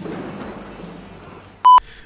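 A short, loud electronic beep at one high, pure pitch, lasting about a fifth of a second near the end. Before it, a faint noisy tail of film soundtrack fades out.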